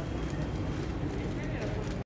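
Steady low rumble of outdoor background noise, with no clear speech.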